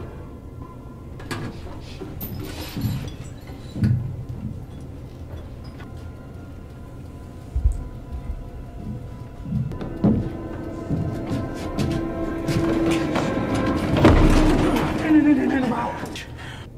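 A war film's soundtrack: tense music of held, droning tones that builds louder in the last few seconds, under muffled dialogue, with a few heavy low thuds.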